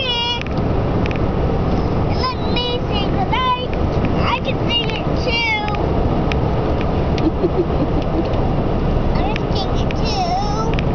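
Young children's high-pitched voices in short, whiny calls, several times over, with steady road noise inside a moving car's cabin.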